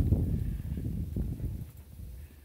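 Low rumble of wind on the microphone with a few dull footfalls on boardwalk planks, fading after about a second and a half.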